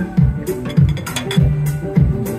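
Live amplified music: electric guitar played over a steady drum beat, a little over two beats a second, without singing.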